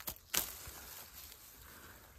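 A mandarin pulled off its branch: a small snap, then a louder one about a third of a second later as the stem breaks away from the fruit.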